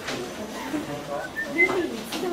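Indistinct murmured voices of several people talking in a room, with a brief high squeak about one and a half seconds in.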